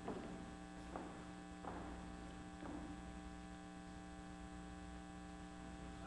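Steady electrical mains hum, with a few faint short sounds in the first three seconds.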